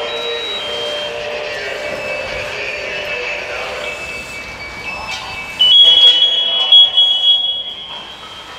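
Steady hissing noise with thin, high whining tones from the burning truck and the hose work around it. About five and a half seconds in, a loud, shrill, steady alarm tone starts and holds for about two seconds before dropping back.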